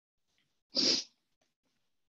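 A single sneeze, about a second in, lasting under half a second.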